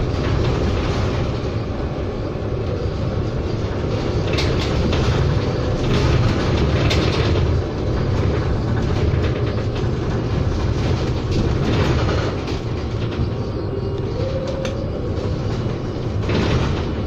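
Cabin noise inside a moving Proterra BE40 battery-electric bus: a steady low road and tyre rumble with occasional short rattles. A brief rising whine is heard about fourteen seconds in.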